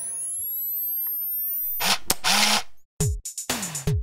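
An electronic sound effect: several high tones glide upward together, ending in two loud hissing bursts about two seconds in. After a brief silence, an electronic drum-machine beat starts about three seconds in, with deep kick drums that fall in pitch and sharp noisy hits.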